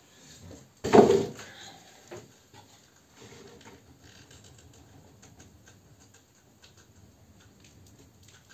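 A single loud thump about a second in, then faint rustling and light ticks as a small wood-burning stove's fire of wet wood is tended and fanned at the open door.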